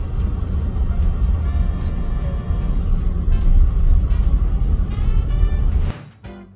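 Steady low rumble of a car driving on a snowy highway, heard from inside the moving car's cabin, with faint background music on top. It cuts off suddenly at the end.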